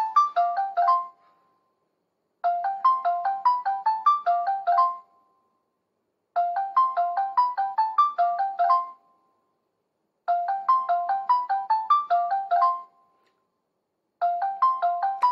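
Smartphone playing an outgoing call's ringback melody, most likely the LINE app's calling tune: a short tinkling phrase of quick notes about two and a half seconds long, repeating every four seconds. The call rings out unanswered.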